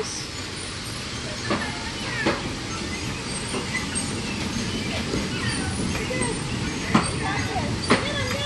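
Bumper cars running on the metal floor of a bumper-car ride: a steady rumbling hum with a few sharp knocks, about a second and a half in, again a little later, and twice near the end. Faint voices sound behind it.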